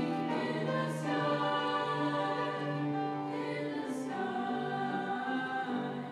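A girls' choir singing held chords together, twice landing on a sung 's' sound, about a second in and again about four seconds in.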